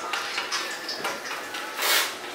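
Light clicks and knocks of small plastic objects being handled on a table, with a short rush of noise near the end.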